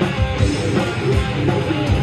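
A rock band playing live and loud: electric guitars, bass and drums, with the kick drum thumping in a steady pulse.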